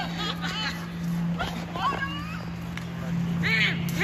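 Young people's voices calling and shouting across an open field in short bursts, over a steady low hum.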